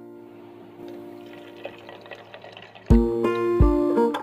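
Liquid pouring faintly into a blender jar of tomato purée, under soft held music tones. About three seconds in, loud background music cuts in with plucked guitar notes and heavy bass thumps.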